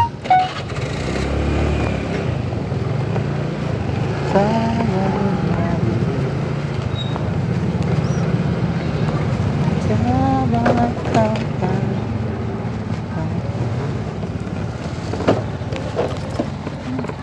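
Motorcycle engine running steadily at low speed while riding, with a low hum throughout. People's voices are heard briefly about four seconds in and again around ten seconds.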